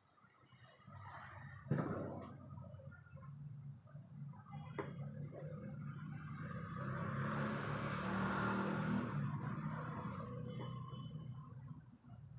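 A motor vehicle passing by: its engine hum and hiss swell to a peak about eight seconds in, then fade away. Before it there is a sharp click near two seconds in and a lighter click at about five seconds.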